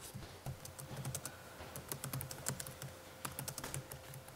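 Quiet, irregular tapping of a laptop keyboard as someone types.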